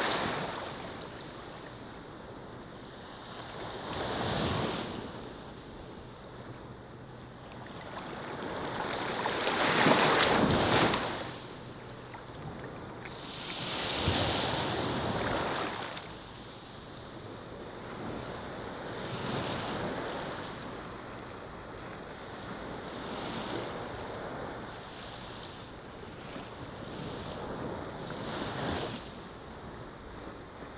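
Small waves washing onto a sandy beach, swelling and falling back every four to five seconds, with the loudest wash about ten seconds in.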